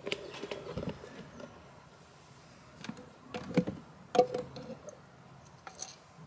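Glass jars being handled in a plastic storage box: scattered knocks and clinks, a few with a short glassy ring, about midway through.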